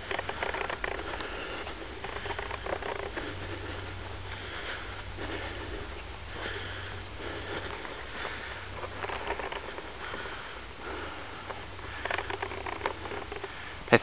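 Footsteps on a dirt track and a person's breathing, over a low steady hum that fades out about two-thirds of the way through.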